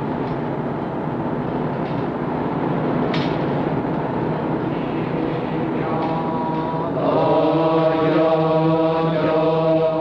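Wire-drawing machinery in a wire works running with a steady dense din, then a congregation's Pure Land Buddhist chanting fades in about six seconds in and grows louder, many voices holding steady notes together.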